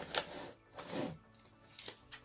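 Yu-Gi-Oh! trading cards being flipped and slid against one another by hand, a few short soft rustles with quiet gaps between.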